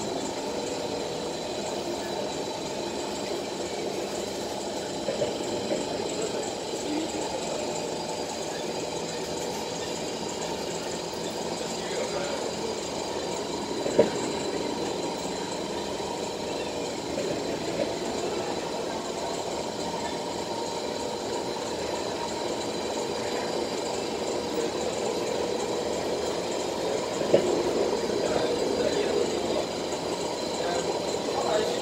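Cabin noise of a moving SMRT Kawasaki C151 metro train: steady running noise from the wheels and motors, with a faint steady high whine. A single sharp knock comes about 14 seconds in and another near the end, where the running noise grows a little louder.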